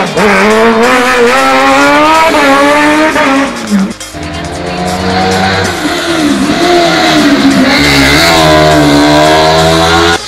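Racing car engines revving hard up and down through a hillclimb's corners, with tyre squeal as a car slides through a hairpin. The sound breaks off about four seconds in and a second car's engine takes over, climbing in pitch toward the end.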